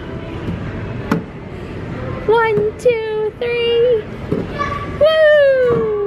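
Young children's high-pitched voices calling out in short held calls, then one long falling call near the end, over a steady background of play-area chatter, with a couple of sharp clicks.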